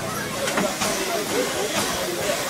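The standing BR A1 Class 4-6-2 steam locomotive 60163 'Tornado' hissing steam steadily, with a few short louder gusts, under crowd chatter.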